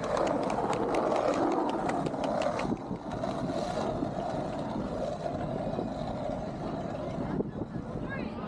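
Wheelchair rolling along a concrete beach path, a steady rolling noise with a scatter of clicks over the first few seconds, and faint voices of passers-by.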